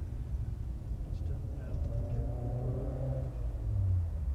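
Low, steady road rumble of a moving vehicle's engine and tyres in traffic, with a pitched engine note swelling and fading midway.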